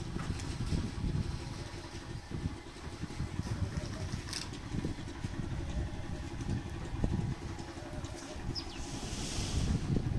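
UTB Universal 650M tractor's four-cylinder diesel engine idling steadily.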